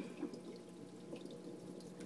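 Faint trickle and drip of water from a running aquarium filter, over a low steady hum.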